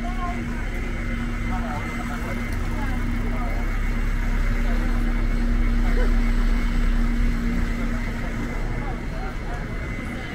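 A double-decker bus passes close by in city street traffic, with a low engine rumble that swells to its loudest about six seconds in. A steady hum runs under it and stops near the end, with passers-by chattering in the background.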